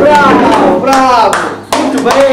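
Loud, excited vocal exclamations with falling pitch, mixed with a few sharp hand claps.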